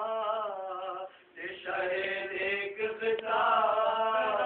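Male voice chanting a marsiya (Urdu elegy) in long held notes that glide gently up and down, with a brief pause a little after a second in.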